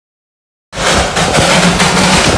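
A Darjeeling Himalayan Railway B-class steam locomotive running close by: a loud, dense rushing noise with a low steady hum and wind on the microphone, cutting in abruptly under a second in.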